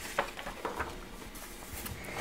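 A page of a large bound paper brochure being turned by hand. There is a light tap a fraction of a second in, then faint paper rustling that grows near the end.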